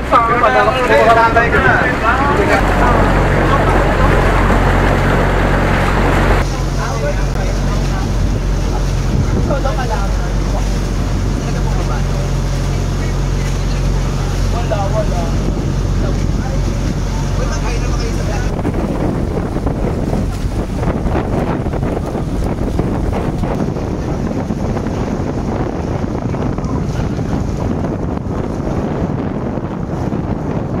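Outrigger boat's engine running with a steady low hum, with wind rushing over the microphone and water noise. The engine hum fades out after about the first half, leaving wind and water.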